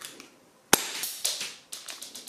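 An airsoft pistol handled in gloved hands: one sharp click about three-quarters of a second in, then rustling and a few lighter clicks.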